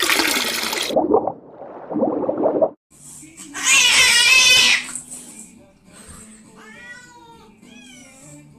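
A splashing transition sound effect fills the first three seconds. Then a cat gives one loud, wavering meow, followed by fainter meows near the end.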